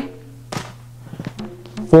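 A front side kick striking a handheld Thai pad once, a single sharp impact about half a second in, over steady background training music.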